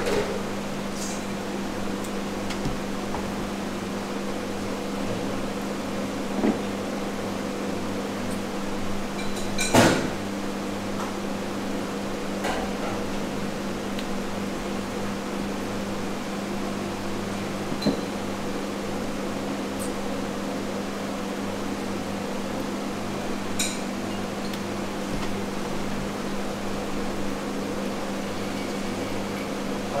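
Steady machine hum with a low tone, with a few light knocks and clicks, the loudest about ten seconds in.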